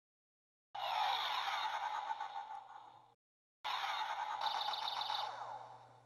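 Two dubbed dragon roar sound effects, each about two and a half seconds long. Each starts abruptly and fades away, with a short silence between them.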